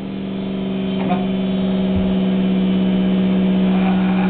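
Dremel rotary tool with a Petacure nail-grinding head running at a steady speed, a constant motor hum that grows gradually louder.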